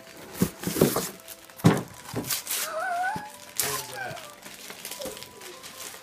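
Wrapping paper torn off a small present in a few quick rips, loudest in the first two seconds. A high, wavering whine sounds about three seconds in.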